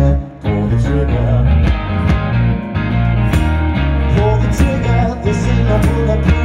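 Live blues-rock song played loud: guitar over a strong bass line and a steady beat, with singing coming in and out. The sound drops out briefly about a quarter of a second in, then picks straight back up.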